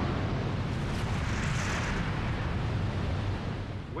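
A dense, low rumble with a hissing rush that swells in the middle and fades away at the end. It is an eruption sound effect standing for a seafloor gas eruption of methane and hydrogen sulfide.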